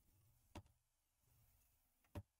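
Near silence, with a single faint click about half a second in.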